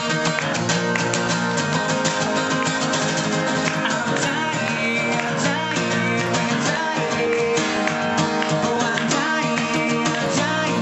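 Acoustic guitar strummed in a steady, continuous rhythm of full chords.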